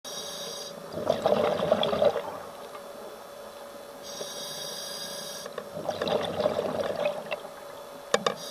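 Scuba diver breathing through a regulator underwater: a hiss on each inhale, followed by a louder rush of exhaled bubbles. Two full breaths, one starting at the beginning and one about four seconds in.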